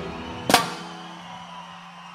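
A reggae band ending a song: one sharp final hit about half a second in, then the last chord fading away.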